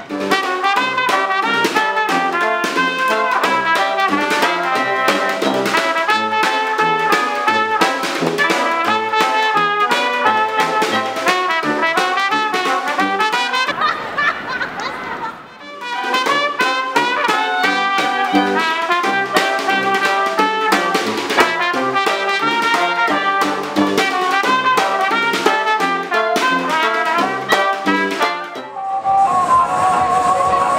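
Upbeat brass band music led by trumpets and trombones, with a short break about halfway through.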